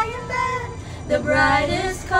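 Two girls singing a duet into handheld karaoke microphones, holding long notes, with a short lull in the middle before the next line.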